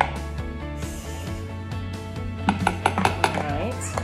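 Kitchen utensils clinking against a ceramic mixing bowl, with a quick run of sharp clinks about two and a half seconds in, over steady background music.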